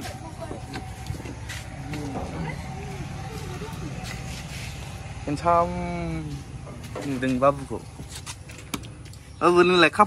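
A steady low hum runs throughout, under brief snatches of a voice. There is one drawn-out call about five and a half seconds in and a shorter one about a second later.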